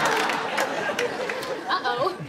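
Audience laughter dying away, with a voice beginning to speak near the end.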